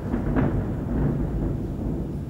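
A low rumbling noise, with a couple of soft knocks about half a second and one second in.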